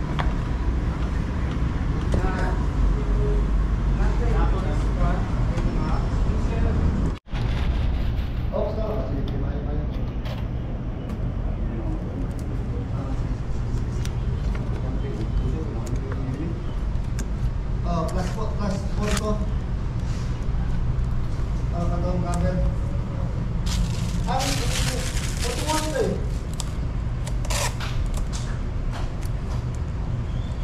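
Indistinct talk over a steady low hum, with a brief dropout about seven seconds in. Near the end come a few seconds of sharp clicks and rustles, as of hands handling plastic parts.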